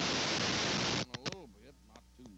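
Loud, steady static hiss on an old videotape recording, cutting off suddenly about a second in, followed by faint voices.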